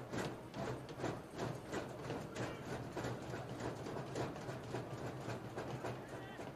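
A steady run of sharp knocks, about three a second, over a low steady hum.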